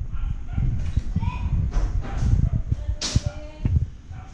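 Handheld camera rumble and irregular low thumps of footsteps as the camera is carried across the room, with a sharp hissy click about three seconds in and faint, brief distant voice sounds.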